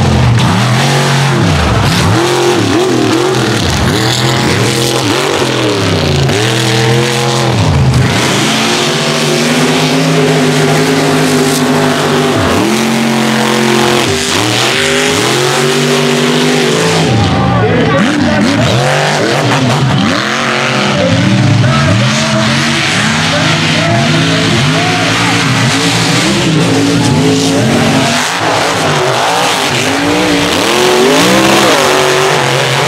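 Mega mud trucks' big engines revving hard as they race through the mud, the pitch climbing and falling over and over, with one long held high rev partway through.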